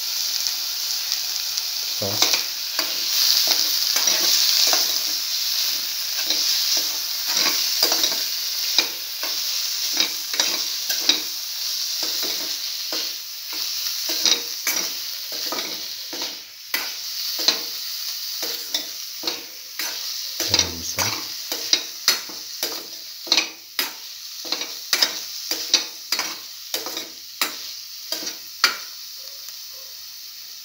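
Cottage cheese cubes frying in oil in a pan and being stirred, with a steady sizzle and the utensil scraping and tapping the pan about once or twice a second. The sizzle dies down over the second half, leaving the stirring strokes more distinct.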